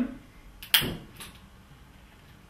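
A sharp click from a long-nosed utility lighter being triggered, followed by a fainter click about half a second later. It is being used to light the fuel on a multifuel stove's preheating pad.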